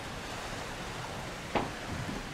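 Steady rush of wind and open sea heard from high on a cruise ship's side. There is one brief louder burst about a second and a half in.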